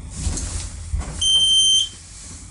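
Passenger lift signalling its arrival with one steady electronic beep, a little over half a second long, that cuts off sharply. It comes after a brief rustling noise from the car and is the loudest sound here.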